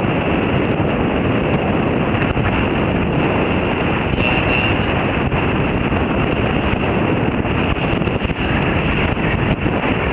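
Strong wind buffeting the microphone in a loud, steady rush, with choppy water noise underneath.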